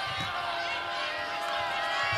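Basketball arena sound during play: crowd chatter and shouting, with sneakers squeaking on the hardwood and a basketball being dribbled.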